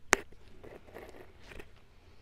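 A sharp click just after the start, then faint crunching and crackling from a lathe's carbide insert taking an interrupted facing cut across a steel raised-face flange, over a low steady hum.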